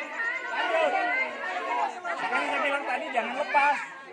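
A group of schoolchildren chattering, many voices overlapping with no single clear speaker.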